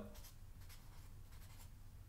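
Faint scratching strokes of a felt-tip marker writing on paper.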